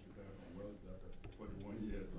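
A person speaking at a steady conversational level, the words not made out.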